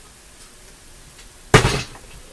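Quiet room tone, then one short, sharp clack about one and a half seconds in, from pliers handling wire on a workbench.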